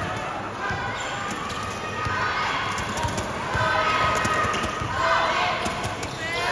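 A basketball being dribbled on an indoor court, with a string of sharp bounces, under the chatter and shouts of a crowd in a large hall.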